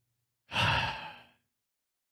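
A man sighing once into a close microphone, a breathy exhale with a little voice in it, lasting about a second.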